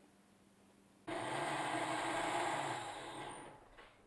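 Electric countertop blender running: a steady motor whir that starts abruptly about a second in, runs for about two seconds and dies away near the end.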